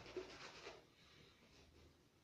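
Faint, soft swishing of a shaving brush working shaving cream onto a face in circular strokes, mostly in the first second, then near silence.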